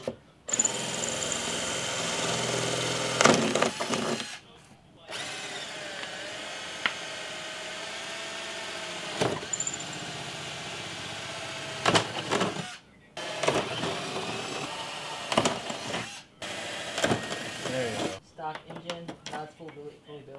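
Cordless drill drilling mounting holes through a fiberglass front bumper for a carbon fiber splitter. It runs in four bursts of a few seconds each, each cutting off abruptly, with the pitch wavering during the longest run and a few knocks between runs.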